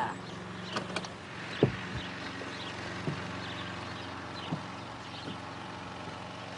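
Sports car engine idling steadily, with a few faint knocks and clicks over the top.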